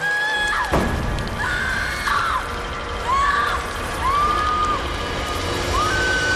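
Horror-film soundtrack: a woman screaming, a string of long held screams one after another, over music and a steady rushing noise.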